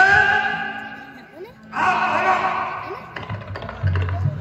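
A man's amplified voice declaiming stage dialogue in two long, drawn-out, half-sung phrases with echo, over a steady low hum from the sound system. A few clicks and a thump come near the end.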